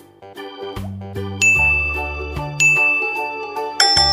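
Background music with a bright ding sound effect three times, a little over a second apart, the last one higher than the first two.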